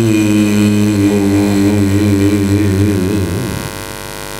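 A man's voice chanting Quranic Arabic recitation in long, drawn-out melodic notes through a mosque loudspeaker system. The last held note wavers and fades about three seconds in, leaving a steady electrical mains hum from the sound system.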